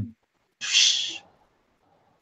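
A person's short, breathy exhale into a headset microphone, about half a second long, about half a second in.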